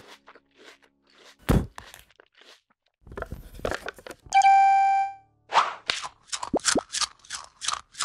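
Cartoon sound effects: a few light clicks and one heavy thump, a short bell-like ding a little past the middle, then a quick run of pops, about three a second, some sliding down in pitch.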